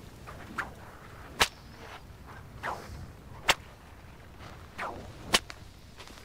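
Bullwhip cracked three times, about two seconds apart: each crack is a sharp snap, with a softer swish shortly before it.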